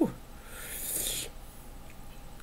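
A man's short hissing breath through the mouth, lasting about a second, while his mouth burns from a hot habanero.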